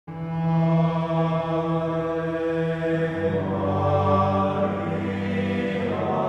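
Opening music of slow sung chant, each note held long, moving to a lower note about three seconds in.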